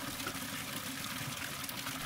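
A steady stream of water pouring from a stone fountain spout and splashing into a pool.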